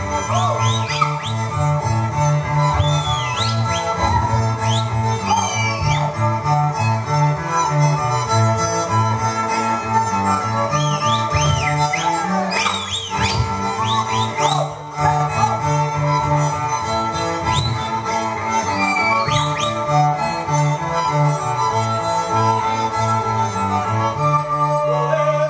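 Slovak folk string band playing fast dance music: fiddles over a steadily stepping bowed bass line, with a few sharp knocks.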